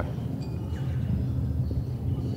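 Steady low outdoor background rumble, with a few faint high chirps about half a second in.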